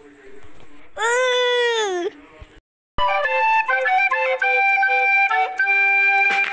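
A child's drawn-out wailing cry lasting about a second and falling in pitch at the end. After a brief silence, an outro melody of sustained flute-like notes starts about halfway through.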